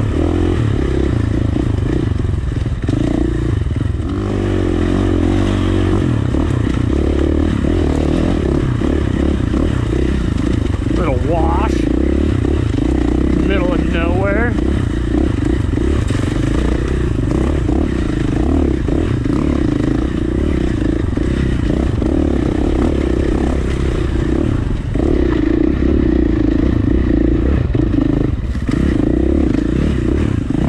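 2019 KTM 450 dirt bike's single-cylinder four-stroke engine running under a rider's throttle on rocky single track, its revs rising and falling, with clatter from the ground. A brief wavering higher sound rises over the engine about halfway through.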